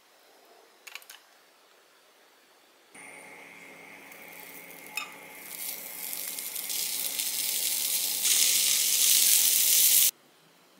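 Inari-wrapped enoki mushroom rolls sizzling as they fry in a rectangular tamagoyaki pan, the sizzle starting suddenly about three seconds in and growing louder as more rolls go into the pan, with a sharp click about five seconds in. A couple of soft clicks come before the sizzle starts.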